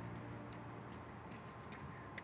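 Faint footsteps of a person jogging on a concrete path: light, evenly spaced ticks, about two or three a second, over a low steady hum.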